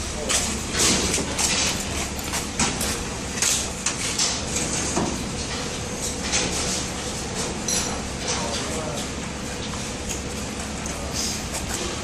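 Packaged metal hardware on card backings being laid and shifted by hand on a skin packing machine's perforated metal plate: irregular clacks, clinks and card rustles, over a steady faint machine hum.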